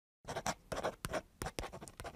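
Writing sound: a pen scratching out letters in quick, irregular strokes, starting about a quarter second in.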